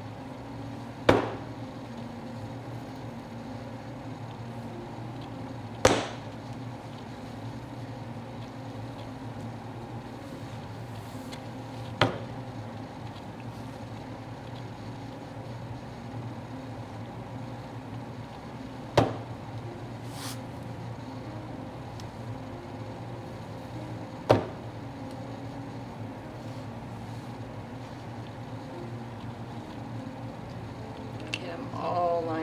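Five plastic cups filled with layered acrylic pouring paint set down upside down on a canvas one at a time, each landing with a single sharp knock several seconds apart, over a steady low hum.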